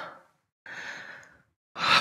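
A man's audible breath between sentences, close to a headset microphone: a long out-breath lasting under a second, then a quick in-breath just before he speaks again.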